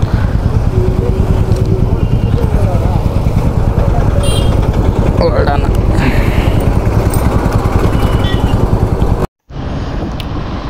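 Motorcycle engine running at a steady cruising speed, with wind noise on the rider's microphone. The sound cuts out for a moment near the end.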